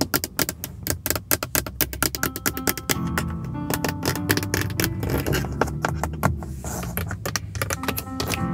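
Long fingernails tapping rapidly on the hard plastic of a car's interior door panel, grab handle and window-switch panel, many sharp taps a second. Soft spa-style music plays underneath.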